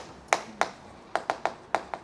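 Chalk tapping against a chalkboard as it marks the board: a series of short sharp taps, coming closer together in the second half.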